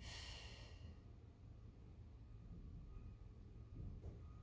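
Near silence with a faint low room rumble, and one soft breath out in the first second while the seated spinal-twist stretch is held.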